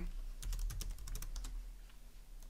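Typing on a computer keyboard: a quick run of keystrokes about half a second in, thinning out to a few scattered taps toward the end.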